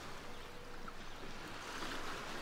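Faint, steady wash of the sea lapping at a sandy shore.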